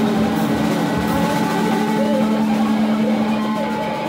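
Live free-improvised noise music: a loud steady drone with wavering, sliding tones above it, and loose cymbal and drum strokes about half a second and a second in.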